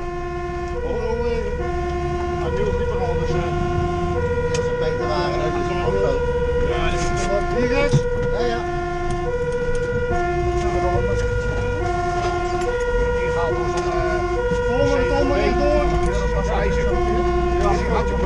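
Fire engine's two-tone siren, heard from inside the cab, switching between a low and a high note, each held a little under a second. Under it the truck's engine runs steadily and grows louder about halfway through.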